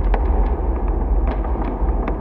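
Atmospheric intro of a hip-hop track, with no beat or vocals: a deep, steady sub-bass rumble scattered with irregular crackles and clicks.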